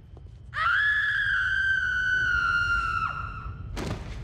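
A woman's long, high-pitched scream as she falls, starting about half a second in, sinking slightly in pitch and breaking off about three seconds in. A sharp thud comes near the end.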